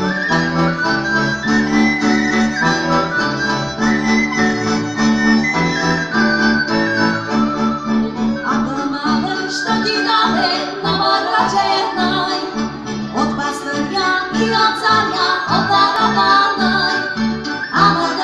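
Live eastern Slovak cimbalom band music: violin, accordion, cimbalom and double bass playing a folk tune, the low notes keeping a steady pulse under the melody.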